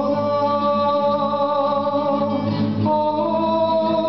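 A man sings a slow Serbian Orthodox spiritual song with long held notes, accompanying himself on a classical guitar. The melody moves to a new held note about three seconds in.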